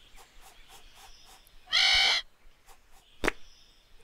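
A seagull squawks once, a harsh, even-pitched call about half a second long, nearly two seconds in. A short sharp click follows a little after three seconds.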